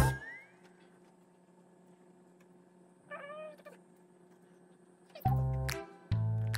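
A cat gives one short meow about three seconds in, during a near-quiet gap. Background music stops just after the start and comes back near the end.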